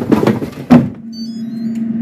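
Air fryer basket slid shut with two clattering thunks in the first second, then a few faint electronic beeps and the air fryer's fan starting up in a steady hum.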